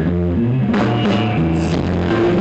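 Live grunge band playing loud: electric guitars and bass holding low notes, with drum and cymbal hits from about three-quarters of a second in.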